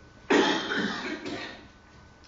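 A man coughs: a sudden harsh burst about a third of a second in, with a second weaker push, trailing off over about a second.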